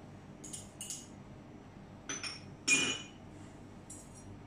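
A small metal spoon clinking against small serving bowls and the blender jar as ingredients are spooned in: about five light clinks, the loudest and most ringing one about three seconds in.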